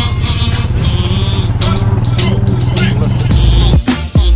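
Quad bike engine running at a steady pitch under background music, with a few spoken words. A bass-heavy music track with a kick-drum beat takes over near the end.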